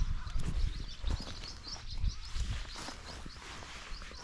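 Rural outdoor ambience: an irregular low rumble with a few soft thumps, and faint, quickly repeated high chirps of birds.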